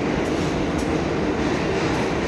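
A subway train running through the station, a steady noise that fills the pause in talking.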